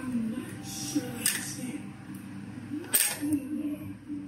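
A person eating, biting into and chewing a piece of veggie-meat barbecue, with two sharp clicks: one about a second in and a louder one near three seconds.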